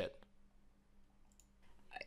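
Near silence: room tone with a faint low hum, and a few faint clicks about one and a half seconds in.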